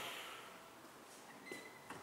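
Quiet room tone as a voice's echo dies away. In the second half there is a faint, high, steady beep lasting under a second, with two light clicks near the end.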